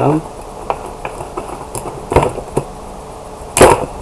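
Plastic toy packaging being worked apart by hand: a few light clicks and scrapes, a knock about two seconds in, and a sharp snap near the end, the loudest sound, as the plastic tabs holding the toy pony's hair are pulled free.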